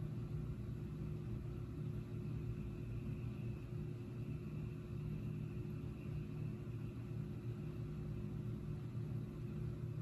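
Steady low background hum with a faint hiss, unchanging throughout, with no distinct events.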